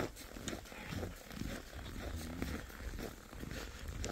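Footsteps crunching on packed snow, with a brief low growl about two seconds in.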